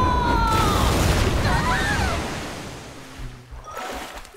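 Cartoon sound effect of a cannonball dive into a swimming pool: a loud splash of rushing water that dies away over about two seconds, over music. In the first second a held note slides down.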